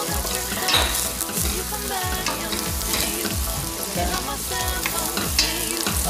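Diced onion and garlic sizzling in butter in a stainless steel pot, stirred with a wooden spoon, over background music with a steady beat.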